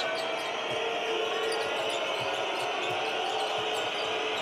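A basketball being dribbled on a hardwood court, a few faint thuds, under the steady din of an arena crowd.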